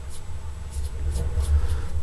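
A steady low hum, with a few faint light clicks from handling at the tying bench.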